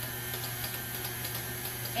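Electric stand mixer running steadily on a low speed setting, beating batter in its steel bowl with an even hum.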